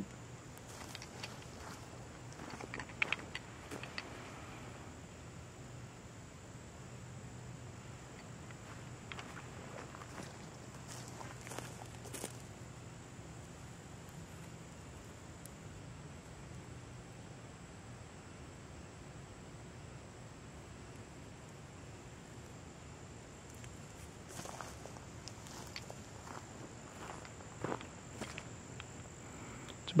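Quiet outdoor ambience: a steady high insect drone, a faint low hum that stops about halfway, and a few scattered footsteps and rustles.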